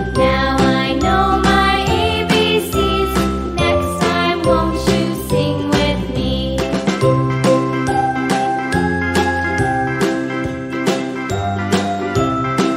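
Instrumental children's song music: a melody of short notes over a bass line, with a steady beat.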